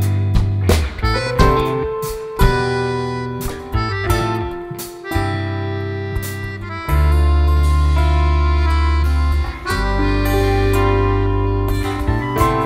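Live band playing an instrumental passage with no singing: strummed acoustic guitar and accordion over bass and drums. From about five seconds in, long held chords dominate.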